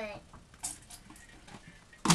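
A voice trails off, then a quiet room with a few faint, brief rustles and clicks of something being handled, the clearest a little after half a second in.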